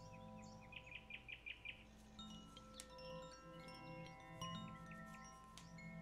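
Faint ambient relaxation music: steady drone tones with tinkling wind chimes. About a second in comes a quick run of about seven short chirp-like notes, followed by scattered high chime notes that ring briefly.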